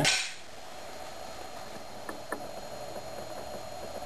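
Homemade 18-jet aluminium-can alcohol stove burning steadily inside a windscreen under a pot of water: a soft, even rushing, with two faint ticks about two seconds in.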